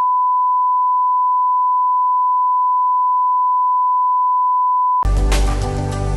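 A steady, unbroken test-card bleep, the single-pitch reference tone that goes with TV colour bars, cut off sharply about five seconds in as music comes in.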